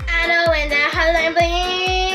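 A girl's voice singing a melody with long held notes over pop music with a steady drum beat.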